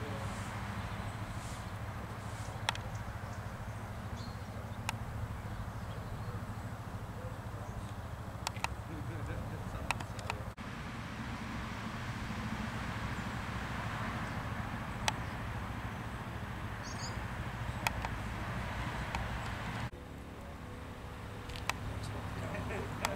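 Outdoor background of a busy car park: indistinct distant voices over a steady low rumble, with a few sharp clicks scattered through it. The rumble drops away near the end.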